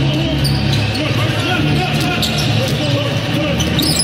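Basketball dribbled on a hardwood court, sharp bounces at uneven intervals over a steady hum of arena sound.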